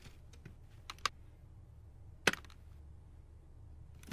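Lego plastic parts clicking as a hand works a small Technic bridge mechanism: two light clicks about a second in, then one sharper click a little past the middle, over a faint low hum.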